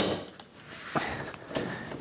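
Quiet handling noise of metal bar clamps being taken hold of and loosened on a glued-up board in a clamping jig.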